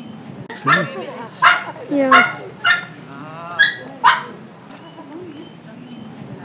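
Tibetan Spaniel barking, about six short, sharp, high barks in quick succession, starting under a second in and stopping about four seconds in.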